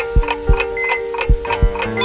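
Clock ticking sound effect, about three ticks a second, over background music with held tones.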